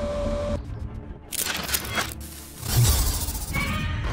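Cartoon soundtrack music with sound effects: a low hum, then crackling, shattering bursts about a second and a half in, and a heavy low hit near three seconds.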